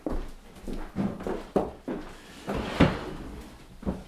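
A string of knocks and bumps from people moving about a dining table: footsteps, a plate set down on the cloth-covered table and a wooden chair pulled out. The loudest knock comes almost three seconds in.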